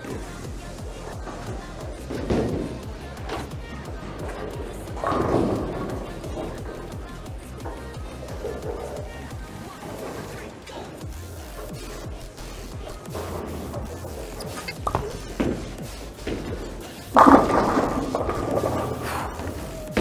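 Background electronic music plays throughout. About 17 seconds in, a sudden loud crash of bowling pins struck by a ball rings on for a couple of seconds, a strike. Smaller impact sounds from the lane come earlier.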